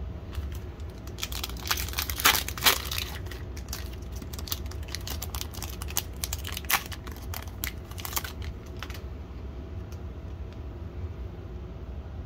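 Foil wrapper of a Donruss Optic football card pack crinkling and tearing as it is opened by hand. The crackle is busiest about two seconds in and dies away after about nine seconds.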